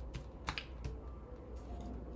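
Tarot cards being handled on a tabletop: a few light clicks and taps, the sharpest about half a second in.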